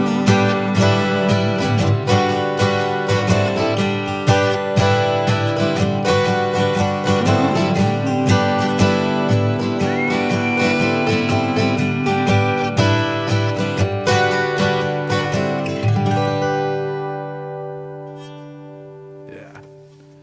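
Two acoustic guitars chiming together in an instrumental passage, with a held whistled note about halfway through. The guitars then thin out and ring down, fading to a close over the last few seconds.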